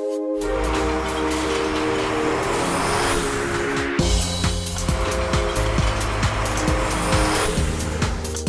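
Cartoon truck driving sound effect over steady background music: a rushing engine-and-road noise as one truck drives off, then a low engine rumble from about halfway as another truck rolls in, with a second rush of noise near the end.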